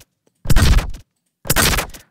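A short, very bass-heavy designed sound effect played back as a series of hits, each about half a second long, with silent gaps between them. The playback alternates between the full original and a thin, bright EQ version with barely any bass, which simulates uncorrected studio monitoring.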